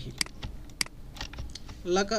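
About half a dozen sharp, irregularly spaced clicks of computer keys being pressed.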